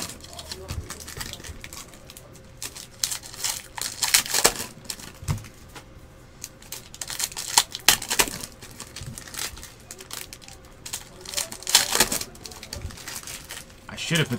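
Foil trading-card pack wrappers crinkling and tearing as packs are handled and ripped open, in short crackly bursts about every four seconds.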